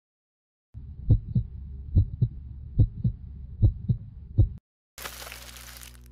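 A heartbeat sound effect: low double thumps, lub-dub, about five beats at a steady slow pulse over a low rumble. It stops, and is followed near the end by a burst of noise about a second long.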